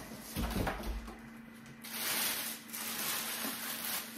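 A dull thump about half a second in, then the plastic bag wrapped around a new Thermomix TM6 rustling and crinkling as it is handled for the last two seconds.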